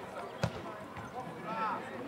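A football kicked once, a single sharp thud about half a second in, with players shouting on the pitch.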